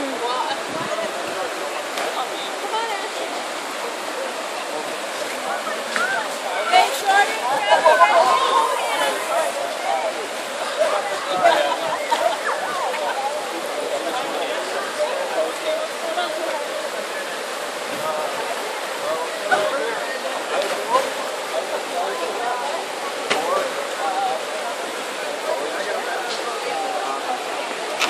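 A shallow river rushing over rocks in a steady wash of running water. Distant voices of people talking and calling come and go over it, most clearly about seven to nine seconds in.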